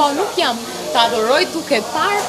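A woman's voice talking animatedly, its pitch swooping widely up and down.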